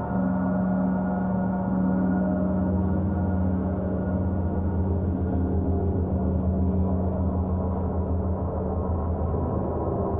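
Gong bath: large gongs played continuously, a dense, steady wash of overlapping ringing tones. A deep low hum swells from about three seconds in.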